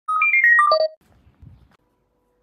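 Short electronic chime jingle: a quick run of about six bright notes that jumps up and then steps down in pitch, over in about a second, followed by a faint low rumble.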